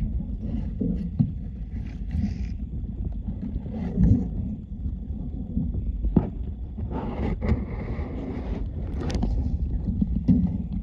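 Muffled underwater rumble and sloshing picked up by a camera held under water while beavers swim right around it, with scattered sharp knocks and a louder rush of water about seven to eight and a half seconds in.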